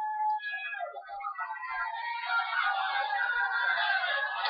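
The wrestling broadcast playing from a speaker in the room, thin and without bass: a steady wash of arena crowd noise with some held tones through it.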